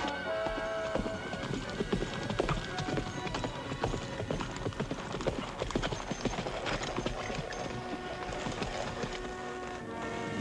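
Horses' hoofbeats, a dense run of irregular clopping knocks, over an orchestral film score.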